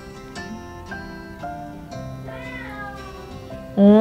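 Domestic cat meowing twice: a softer rising-then-falling meow about two seconds in, then a loud, drawn-out meow starting near the end. The owner takes it for a bored cat asking to be played with. Gentle acoustic guitar music plays underneath.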